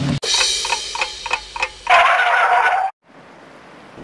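Clock-ticking sound effect, a fast even run of about four ticks a second, followed by a loud held ringing tone of about a second that cuts off suddenly.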